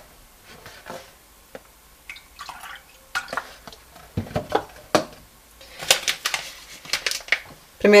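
Light clicks and taps of kitchen items being handled and set down on a glass-ceramic hob: a paper flour bag and a scoop. The taps are scattered and come more often in the second half.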